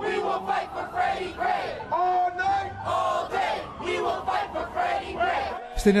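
Crowd of protesters shouting and chanting together in loud, repeated cries.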